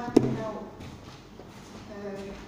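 A single sharp knock close to the microphone just after the start, followed by brief voices in a large room.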